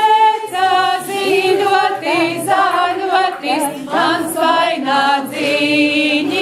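A group of women singing a Latvian folk song together without instruments, in held phrases broken by brief pauses for breath.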